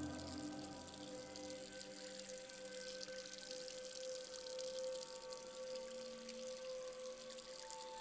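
Ambient horror score, low in level: a sustained drone of several steady held tones over a faint watery hiss, with a new higher tone entering near the end.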